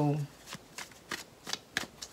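A tarot deck being shuffled by hand: a run of about five short, sharp card slaps, roughly three a second.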